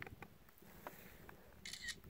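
A few faint handling clicks, then a brief camera shutter sound near the end.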